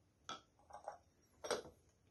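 Two faint clicks of metal utensils against a glass salad bowl, about a second apart, as salt is added to the salad.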